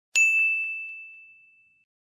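A single bright "ding" sound effect: one high bell-like tone struck once, ringing and fading away over about a second and a half.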